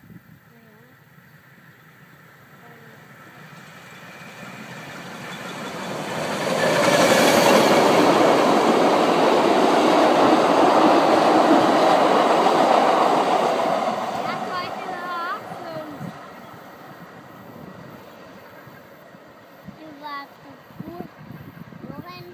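Narrow-gauge electric train, the NÖLB E7 locomotive hauling a rake of coaches, passing close by: the rolling noise of wheels on rails grows over the first several seconds, is loudest for about six seconds as the train goes by, then fades as it moves away.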